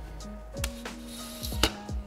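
Background music: a steady low bass with a held note and a couple of sharp percussive hits about a second apart.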